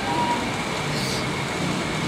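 Steady whooshing room noise from an electric fan running, with faint low voices underneath and a short high hiss about a second in.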